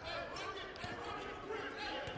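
A basketball being dribbled on a hardwood court, a few separate bounces, with faint voices in the background.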